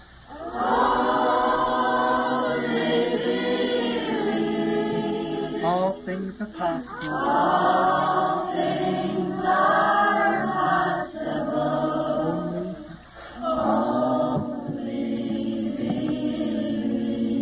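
A group of voices singing a hymn together, holding long notes in phrases with short breaks between them.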